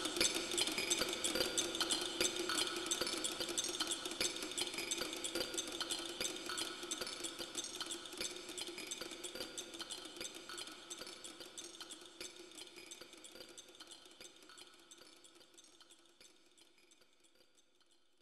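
Synthesized chimes from a Roland Sound Canvas module: a dense shimmer of many quick clinking strokes over a held low tone, fading out steadily to near silence near the end.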